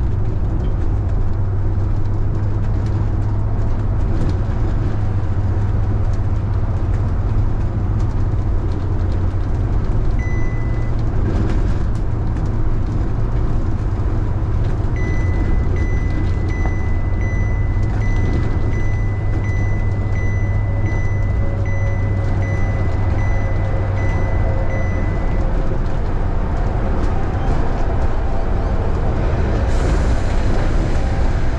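Steady low engine drone and road noise from a vehicle on the move. About halfway through, a high electronic beep starts repeating about twice a second and goes on for some ten seconds.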